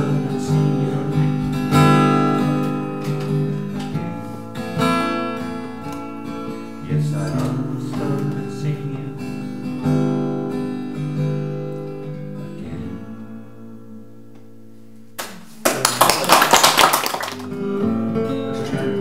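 Acoustic guitar played live, strummed and picked chords ringing out and fading to a lull about twelve seconds in. Near the end comes a loud burst of noise lasting about two seconds, then the guitar starts again.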